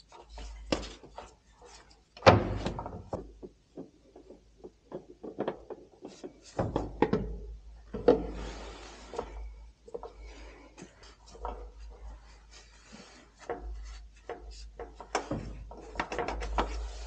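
Irregular clunks, knocks and rubbing as gloved hands work a tractor's engine filters during a filter change, with one loud knock about two seconds in.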